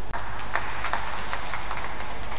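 Scattered spectator hand clapping after a badminton point: a dozen or so irregular sharp claps over a steady low hall hum.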